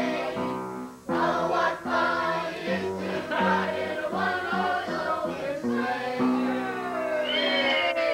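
Music with several voices singing together in held notes, dipping briefly about a second in.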